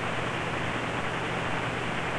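Steady background noise with a low hum and no distinct events: open-air stadium ambience picked up by the broadcast microphone.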